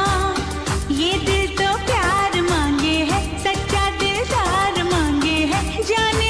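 Old Hindi film (Bollywood) song: a voice singing a gliding, ornamented melody over a steady percussion beat.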